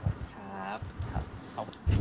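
Quiet voices with a short drawn-out vocal sound about half a second in; louder talking starts near the end.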